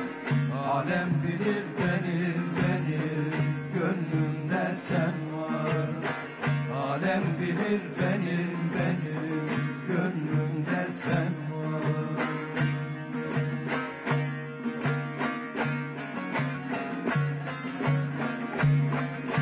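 Instrumental passage of a Turkish folk song (türkü) played on plucked long-necked lutes (bağlama), with quick, regular picked strokes over a steady low drone.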